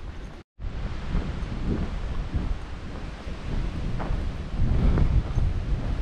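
Wind buffeting the microphone, an uneven low rumble, broken by a brief dropout to silence about half a second in.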